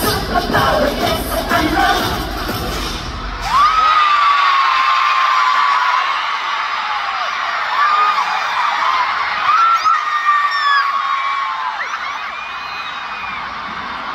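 Concert pop music playing loud over an arena sound system, stopping with a sharp bang about three and a half seconds in. A large crowd then cheers, with many high-pitched screams rising and falling.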